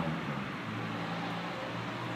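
Outdoor street ambience: a steady hum of road traffic in a town centre.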